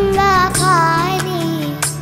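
A young girl singing a devotional nasheed solo, her voice sliding and wavering through ornamented held notes over a steady low instrumental backing. The line eases off near the end.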